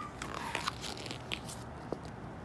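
A picture book's page being turned by hand: a crackling paper rustle about half a second in, then a couple of smaller crinkles as the page settles.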